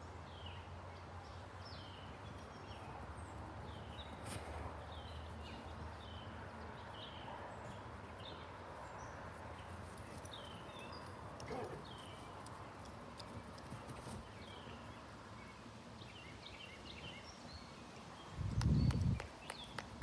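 Small birds chirping repeatedly over a faint steady low hum of outdoor ambience. A brief louder low rumble comes near the end.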